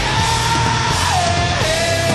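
Live alternative-metal band with distorted electric guitars, bass and drums playing at full volume. Over it the singer belts a long yelled note that holds high for about a second, then drops to a lower held note.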